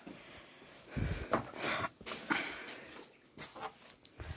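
Handling noise from a phone and plush toys being moved: short rustles and scrapes, with a dull thump about a second in.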